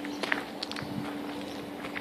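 Footsteps crunching on loose gravel, a few uneven steps, over a steady low hum.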